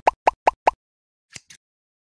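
Logo-animation sound effect: a quick run of about five short pops in the first second, then two faint ticks about a second and a half in.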